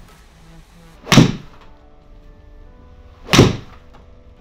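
Two sharp impacts about two seconds apart, a TaylorMade P760 iron striking a golf ball hit into a simulator screen.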